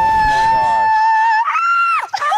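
A young woman screaming in fright: one long held scream at a steady pitch that steps up higher about one and a half seconds in.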